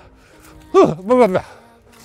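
A man's short wordless vocal exclamation about a second in, over quiet background music.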